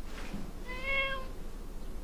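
A cat meows once: a short, slightly arched call about a second in.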